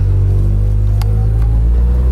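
Car engine heard from inside the cabin, pulling away from a standstill under gentle acceleration: a loud, steady low drone, with a faint click about halfway.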